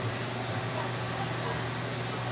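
Steady background ambience: a constant low hum under an even hiss, with faint distant voices.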